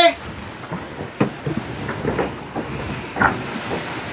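A line being handled on a cockpit winch and line clutch aboard a sailing catamaran. Irregular clicks and knocks, about half a dozen in four seconds, sit over a steady rush of wind and water.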